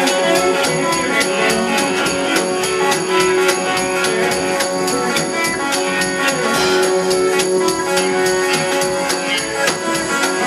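Live folk-blues band playing an instrumental break: accordion, bass clarinet, electric guitar, upright bass and drum kit, with held reed notes over a steady high ticking beat of about four strokes a second.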